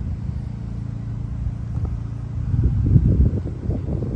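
Supercharged Dodge Charger V8 idling with a steady low hum. About two and a half seconds in, a louder, uneven low rumble takes over.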